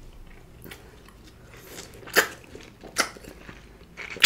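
Crisp crunches of a green orange being bitten and chewed, close up, with two louder crunches about two and three seconds in and a few softer ones between.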